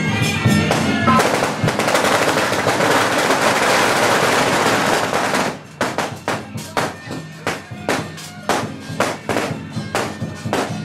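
A string of firecrackers going off in a dense, rapid crackle for about four seconds, then separate sharp bangs at irregular intervals. Procession music with a steady drone runs underneath.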